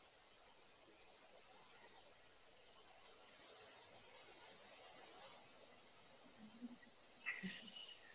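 Near silence: room tone with a faint, steady high-pitched whine, and a few faint brief knocks near the end.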